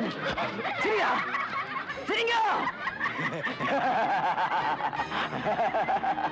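A man laughing loudly in drawn-out, exaggerated bursts, with a crowd laughing along from about halfway through.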